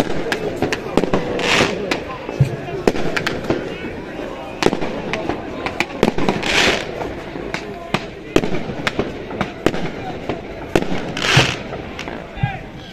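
Pyrotechnics set off by a crowd of football fans: firecrackers going off in many irregular sharp bangs over the voices of the crowd. Three brief hissing rushes come about a second and a half in, midway through and near the end.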